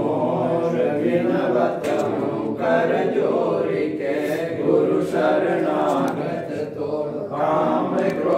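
A group of voices chanting a devotional prayer together in unison, held steadily without pause, as during a guru aarti.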